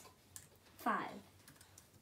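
A few light key clicks on a MacBook laptop keyboard as the digit 5 and Return are typed to enter a calculation into the Python shell.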